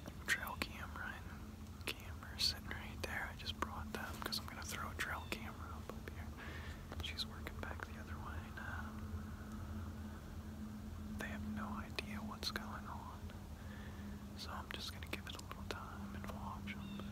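A man whispering close to the microphone in short phrases, with a pause near the middle, over a faint steady low hum.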